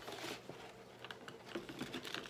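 Faint light clicks and rustling of paper items and small keepsakes being handled while rummaging through a box.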